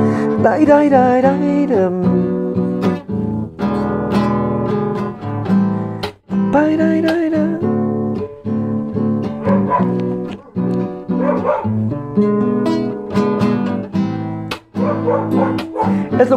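Nylon-string classical guitar strummed steadily through a chord passage, with short breaks between strums. A wavering, gliding voice-like line sounds over it twice, near the start and about seven seconds in.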